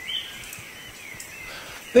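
Faint outdoor background noise with a thin, high chirping that runs steadily and rises and falls a little in pitch, like insects or birds.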